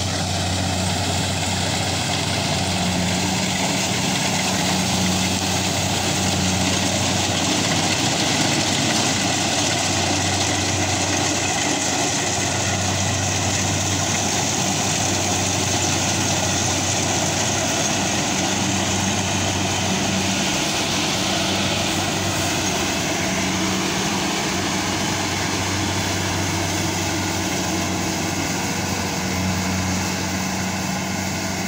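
Kubota Harvest King rice combine harvester running steadily while cutting ripe rice: its diesel engine gives a constant low hum under an even mechanical whir from the cutting and threshing machinery.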